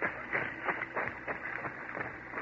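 Radio-drama sound effect of people pushing through grass on foot: a run of soft, irregular rustles and light crunching steps.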